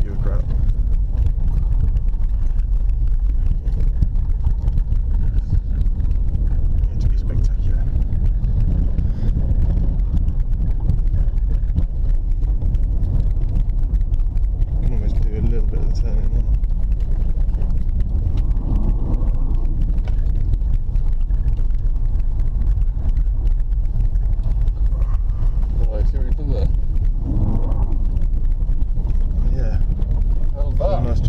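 Inside the cabin of a BMW 325ti Compact, its straight-six engine and tyres on packed snow and ice make a steady low rumble as the car is driven around an ice track.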